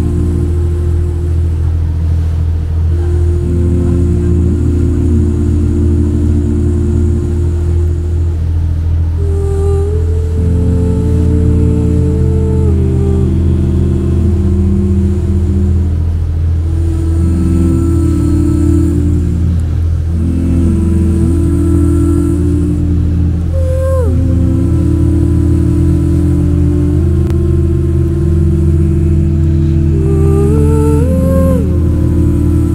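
A bumboat's engine running steadily at cruising speed with a constant low drone, under background music of sustained synth chords that change every second or two.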